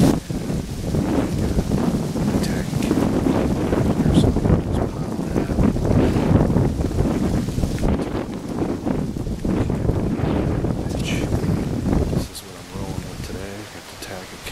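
Wind buffeting the microphone as a low, gusty rumble, with leaves rustling; it eases off a couple of seconds before the end.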